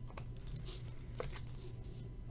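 A trading card being slid into a clear rigid plastic card holder: a brief plastic rustle and two light clicks.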